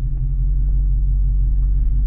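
Supercharged 6.2-litre Hemi V8 of a Dodge Charger SRT Hellcat Redeye idling with a steady low rumble, heard from inside the cabin.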